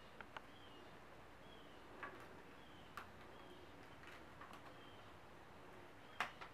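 Near silence: faint clicks and cloth rustles of hands folding a microfiber towel over a plastic steamer attachment and fitting a rubber band. A faint, short, high chirp repeats about once a second.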